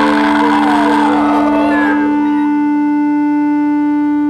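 Grunge/post-punk rock music: a single steady note held as a sustained drone, likely electric-guitar feedback, with wavering sliding pitches over it in the first two seconds that fade away.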